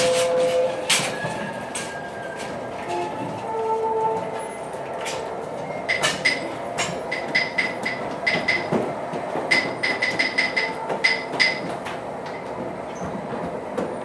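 Wheeled stage flats being rolled and set in place, with knocks and a rolling rumble over a steady background noise. From about six seconds in comes a run of quick, sharp clicks in short groups.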